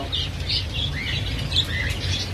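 A cage of budgerigars chirping: short, scattered high chirps, several a second, over a steady low rumble.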